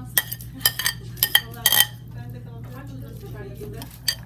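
A metal utensil clinking and scraping against a ceramic plate and bowl, about five sharp clinks in the first two seconds, the loudest and longest near two seconds in, as diced pickles are pushed off a plate into a salad bowl.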